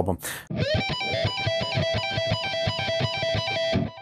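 Electric guitar playing a fast repeating triplet lick high on the neck: pull-offs from the 19th to the 15th fret on the high E string, alternating with the 17th fret on the B string. It starts about half a second in and stops abruptly just before the end.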